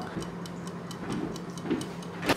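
Cupcake-shaped wind-up kitchen timer ticking quickly and evenly, about five ticks a second, as it counts down the baking time.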